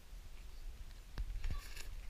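Faint mouth sounds of a man licking an ice cream cone and smacking his lips: two short smacks a little over a second in, over a low rumble.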